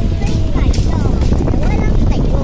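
Steady low rumble of a moving vehicle heard from on board, with wind buffeting the microphone.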